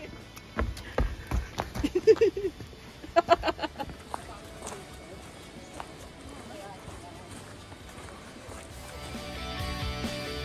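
Footsteps knocking on a wooden boardwalk, with a voice calling out briefly twice, then quieter outdoor sound. Background music with guitar comes in near the end.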